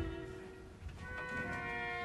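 Orchestral music: a low thud right at the start that dies away, then held chords for brass and strings coming in about a second in.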